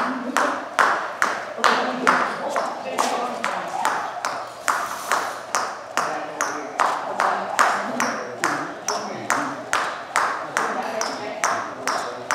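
Jump rope slapping the gym floor in a steady, even rhythm of about two and a half strikes a second, each strike a sharp slap with a short ring from the room.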